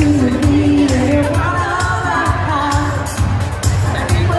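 Live pop song played loud through an arena sound system: a woman singing the lead over a steady dance beat with heavy bass, recorded from within the audience.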